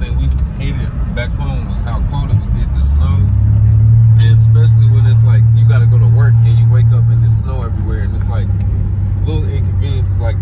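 Low steady drone of a car's engine and road noise heard inside the cabin, under voices. It gets louder about three seconds in and drops back suddenly a little after seven seconds.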